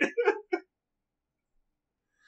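A person laughing in a few short, quick bursts that stop about half a second in, followed by dead silence.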